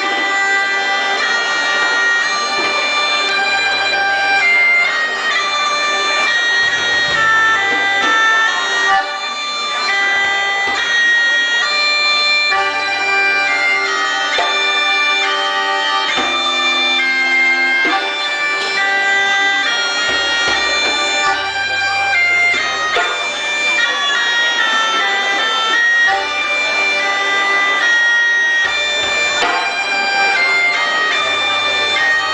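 Live trad folk band playing a tune: a French bagpipe carries the melody over its steady drone, with a diatonic accordion, bass guitar notes coming and going underneath, and djembe hand drums.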